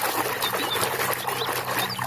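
Hand swishing and scrubbing a small plastic toy in soapy water in a plastic tub: steady sloshing with crackling foam and a few faint high squeaks.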